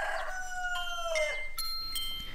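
A rooster crowing: one long call that slides gently down in pitch and fades out about a second in. Chime notes ring in one after another over its end.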